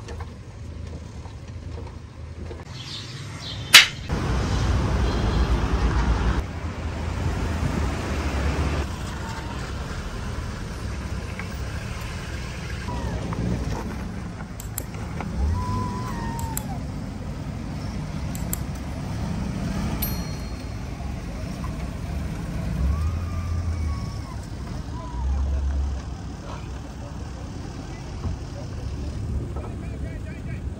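Suzuki Jimny's engine running as the small 4x4 crawls over rough dirt ground, its low rumble swelling and easing with the throttle. A single sharp knock comes just before the rumble grows louder, about four seconds in.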